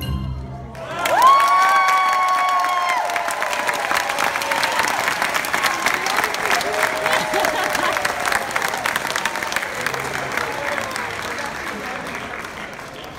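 Recital music stops just under a second in and an audience breaks into applause, with one long held 'whoo' cheer about a second in. The clapping carries on steadily and fades slightly near the end.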